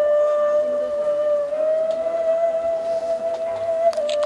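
Slow ceremonial music: a flute holding one long, steady note that rises slightly in pitch about a second and a half in.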